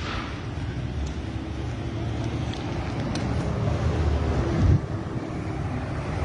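City street traffic: a steady low rumble of vehicles that swells to a peak shortly before the end, then falls away.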